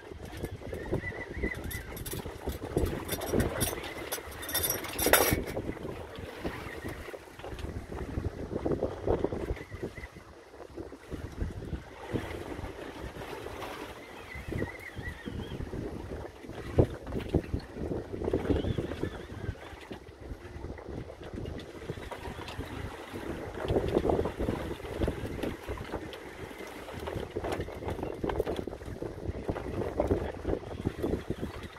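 Wind buffeting a phone microphone on an open boat at sea, gusting unevenly over the noise of the boat and water. A run of sharp clicks comes about two to five seconds in.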